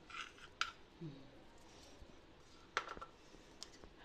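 Faint clicks and light scrapes of small kitchen utensils as spices are measured out for the dal, with a sharper click about three seconds in.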